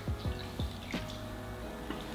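Water dripping and trickling into a small bowl as cotton pads are dipped and squeezed out: a few separate drips, over soft background music.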